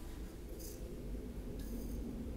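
HP Compaq dc7800p desktop starting up: a low, steady whir from its fans, with two brief high-pitched whirs from the DVD drive initialising, one about half a second in and one near the end. The drive noise sounds as if a disc were loaded, though the tray is empty.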